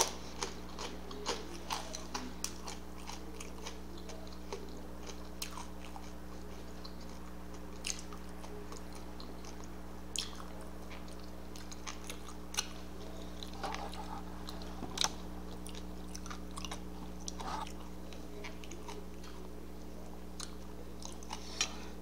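Person chewing a mouthful of burger and french fry with the mouth closed: soft, scattered wet clicks and smacks over a steady low hum.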